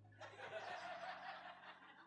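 Faint laughter from a congregation, a soft spread-out chuckling from many people that starts about a quarter second in and fades just before the end.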